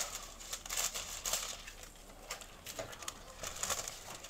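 Irregular crinkling and rustling of a thin sheet being cut across and handled, in clusters in the first second and a half and again near the end.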